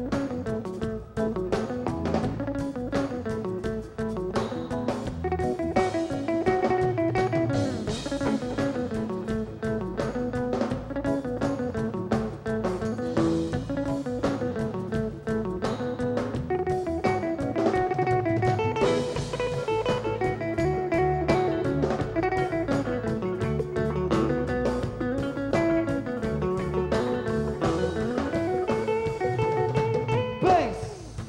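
A live band playing an instrumental passage: an electric guitar plays a melodic lead line over a drum kit and percussion.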